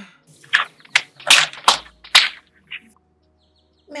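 Dry firewood sticks cracking and knocking together as they are gathered up by hand: about five sharp, loud cracks within two seconds, then a few fainter knocks.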